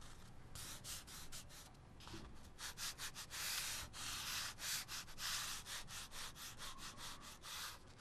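Soft, scratchy strokes of a drawing tool on paper, several a second, with a few longer sweeps in the middle.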